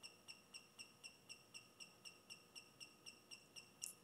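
Faint, high-pitched chirps at an even rate of about five a second from the gimbal's brushless motors, as the SBGC controller's automatic PID tuning shakes the roll axis.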